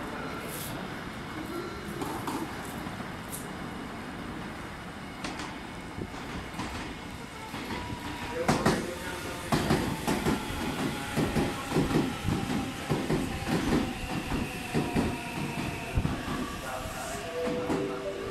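Meitetsu 9500 series electric train pulling into a station platform. The approach builds up, then from about halfway the wheels clatter rhythmically over rail joints as the cars pass close by, with a slowly falling electric whine as it brakes. Near the end the train settles to a stop.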